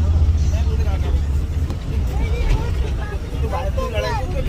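Bus engine running with a steady low rumble, heard from inside the passenger cabin. Voices talk over it in the second half.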